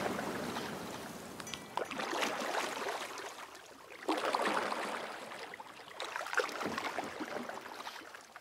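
Small waves lapping at a lake shore: a wash of water that swells and fades about every two seconds, with little splashes.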